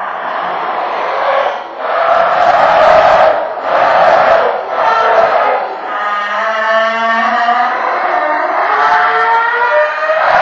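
Electronic voice phenomenon (EVP) recording amplified twenty times: harsh, distorted noise surging and dipping about once a second. In the last few seconds it turns into a wavering, voice-like tone.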